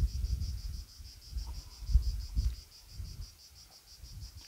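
Cicadas singing: a high, rapidly pulsing buzz that keeps on without a break, with gusts of wind rumbling on the microphone.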